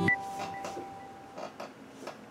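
Last plucked note of a short logo jingle ringing out and fading away over about a second, followed by a few faint clicks.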